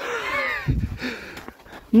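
A man's voice, words not made out, with a brief low thump under a second in.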